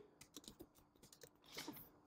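Faint typing on a computer keyboard, a few scattered keystrokes, with near silence between them.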